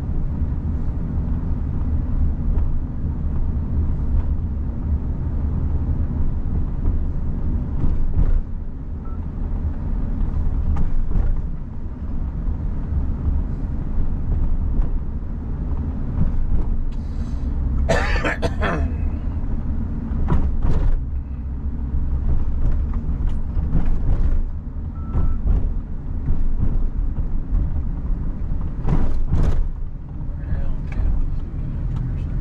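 Car driving slowly, a steady low rumble of road and engine noise. About eighteen seconds in, a brief higher-pitched sound lasts about a second.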